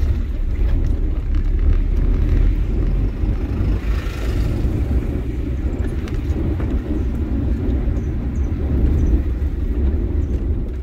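A car being driven, heard as a steady low rumble of engine and road noise, with a brief rush of higher noise about four seconds in.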